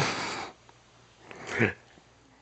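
Baby letting out two short, loud vocal bursts, one at the start and a second about a second and a half in.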